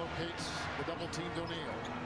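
Basketball being dribbled on a hardwood court in NBA game broadcast audio, with a commentator's voice faintly underneath.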